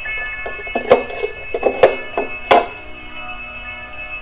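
Soft electronic background music with held, ringing synth tones and a few short, sharp accents.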